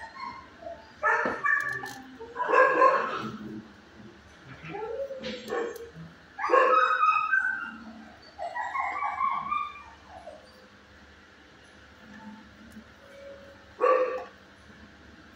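Dogs in an animal-shelter kennel barking at intervals, about six short bouts with quieter gaps between, the last right at the end.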